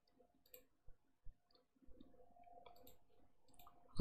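Near silence: faint room tone with a few soft, scattered clicks.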